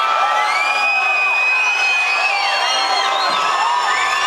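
Rock-concert crowd cheering and whooping, many voices overlapping, with one long held shout standing out in the middle.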